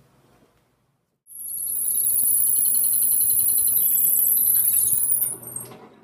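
Benchtop drill press switched on about a second in, its motor running with a steady high-pitched whine for about four seconds. It is then switched off and winds down.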